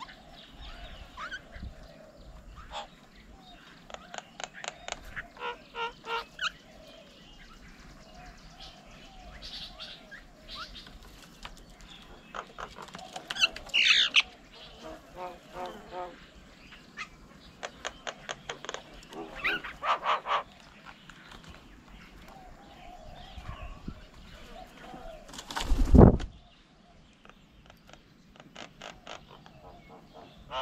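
Mynas at a bird table calling, in repeated bursts of fast harsh notes, with a louder call falling in pitch about halfway through. A loud thump comes a few seconds before the end.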